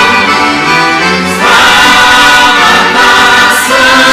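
Mixed choir of children and adults singing a hymn in unison with accordion accompaniment. The sung notes change about a second and a half in and again near the end.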